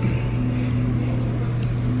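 A steady low hum at an even level, with no distinct events.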